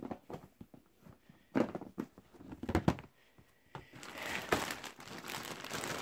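Plastic storage bin being opened, with a few sharp clicks and knocks from its lid and latches. From about four seconds in comes the crinkling of a plastic zipper bag full of pacifiers being handled.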